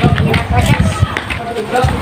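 People talking, with an irregular low rumble and thumps from the phone being carried along on foot.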